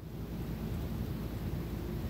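Low rumbling noise that rises over the first half second and then holds steady.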